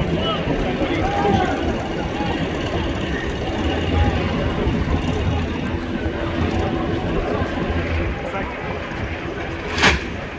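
Boat engine running nearby with a low steady rumble, under faint distant voices; a sharp knock near the end.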